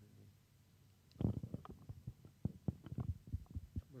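Handling noise from a handheld microphone that has just been switched on: from about a second in, a fast, irregular run of low thumps and knocks as it is handled and passed between hands.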